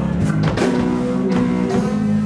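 Live blues band playing an instrumental passage: guitars over bass, with drum kit strikes cutting through the sustained notes.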